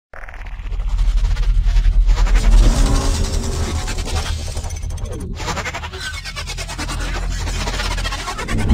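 Cinematic logo-intro sound design. A deep bass rumble swells over the first couple of seconds under a dense, rapid mechanical clatter and whirring, with a brief cut about five seconds in.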